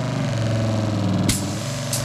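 A 12-volt electric water pump hums steadily as it pushes water through a hose while the air is bled from the line. The pump's tone shifts slightly early on as the hose nozzle opens and water sprays out, with a sharp click about a second in and another near the end.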